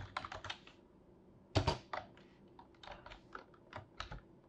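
Typing on a computer keyboard: irregular keystrokes, with a quick run at the start and a couple of louder key strikes about a second and a half in.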